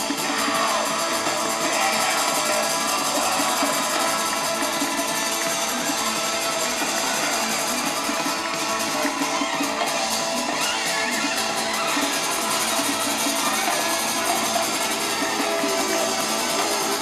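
Live band music played on stage, heard from far back in a concert audience. The sound is dense and continuous, with guitar among the instruments and a thin bass.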